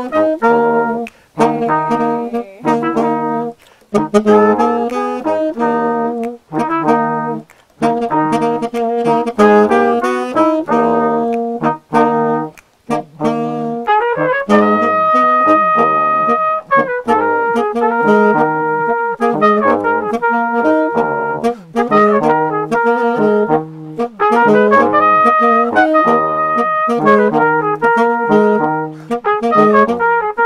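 Saxophone, trombone and trumpet playing a tune together. Short phrases broken by brief pauses give way about halfway through to longer held notes.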